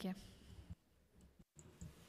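Faint scattered clicks of a pair of eyeglasses being handled close to a desk microphone, with a brief dead-quiet gap in the middle.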